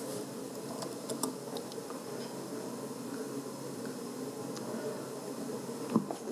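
Steady room murmur of a quiet hall, with a few faint clicks from a laptop keyboard and trackpad about a second in.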